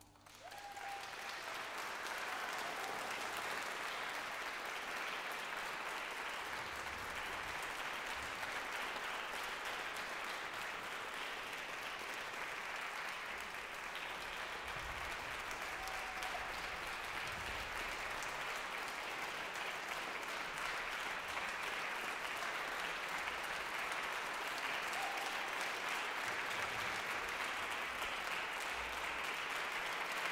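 Concert audience applauding steadily in a reverberant concert hall. The applause builds within the first second or so, as the orchestra's final chord dies away.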